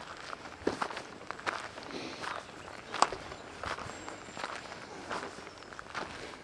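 Footsteps of a walker on a dirt trail at a steady walking pace, a soft step about every three-quarters of a second.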